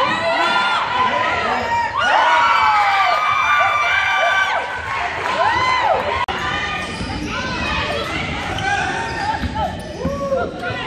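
Basketball shoes squeaking on a hardwood gym floor in many short rising-and-falling squeals, over crowd voices and shouts echoing in the gym. The sound dips briefly about six seconds in.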